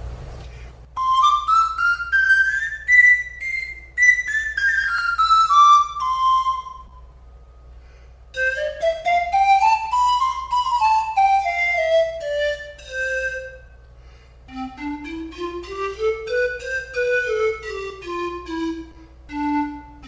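A 22-pipe grand tenor pan flute in C playing three scales, each climbing through an octave note by note and coming back down. It plays the high octave first, then the middle, then the low octave, with a short pause between each run.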